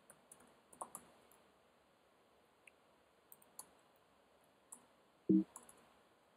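Computer keyboard being typed: light, scattered keystroke clicks at an irregular pace. A brief short voice-like hum about five seconds in.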